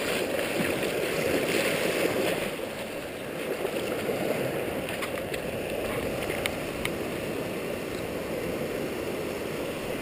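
Shallow ocean surf washing up over the sand, a steady rushing that swells in the first two seconds, eases about three seconds in, then runs on evenly. A few faint clicks come a little past the middle.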